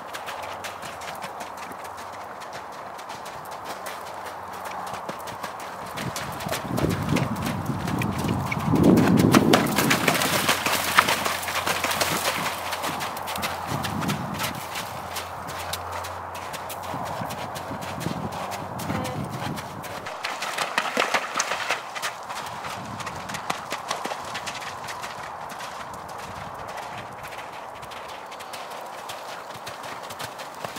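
A horse's hoofbeats at canter on a soft, muddy arena surface. They grow louder about a third of the way in as the horse passes near, then fade again.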